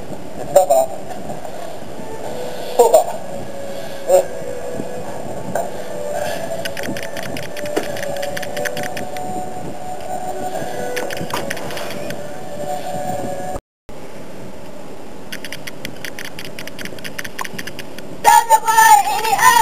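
Runs of rapid clicking from the camcorder's own mechanism, over a steady low hum, with a few short voice fragments in the first few seconds as the loudest sounds. The sound cuts out completely for a moment about 13 and a half seconds in.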